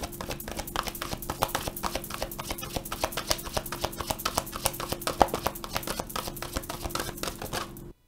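A deck of oracle cards being shuffled by hand, overhand, as a rapid, uneven patter of cards slapping and sliding against each other. A steady low hum sits underneath.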